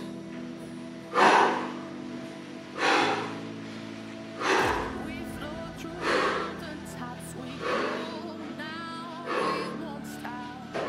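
Background music with held, steady tones, over a man's forceful breaths out, one about every second and a half, from the effort of bicycle crunches.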